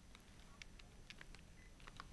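Near silence: low background hiss with a few faint, short clicks scattered through it.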